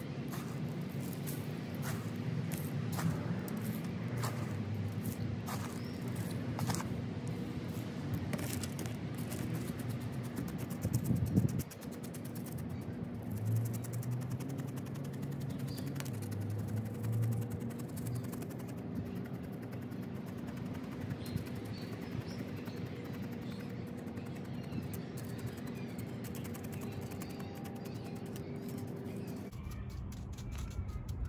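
Background music of sustained low tones, with light clicks and rattles through the first ten seconds or so from gritty perlite bonsai mix being scooped into a plastic pot, and a single thump about eleven seconds in.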